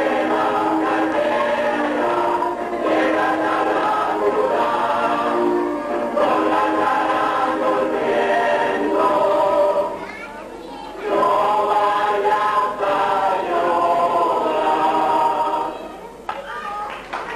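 A group of voices singing a song together, with a short lull about ten seconds in; the singing ends right at the close.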